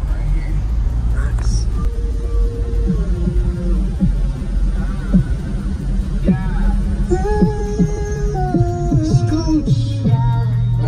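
Car audio system playing a song loudly inside the car's cabin, with heavy, steady deep bass from three 18-inch subwoofers walled into a small car. A sliding melody line rides over the bass from about two seconds in and grows busier near the end.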